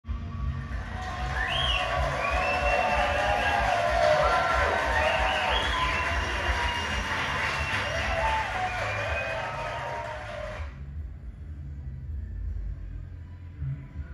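JOYSOUND karaoke machine playing its music jingle for the scoring-contest mode through the room speakers. The jingle cuts off suddenly about eleven seconds in, leaving only a low hum.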